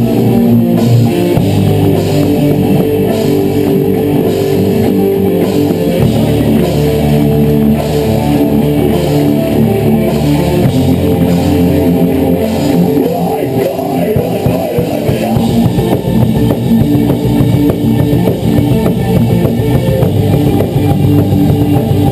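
A heavy rock band playing live: distorted electric guitars, bass guitar and a drum kit in a loud, steady instrumental passage.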